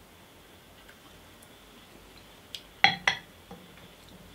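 A stemmed whisky tasting glass set down on a wooden barrel top. A small tick comes first, then two sharp knocks in quick succession about three seconds in, then a faint tick.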